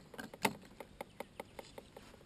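A rapid, even series of light clicks, about five a second, the strongest about half a second in.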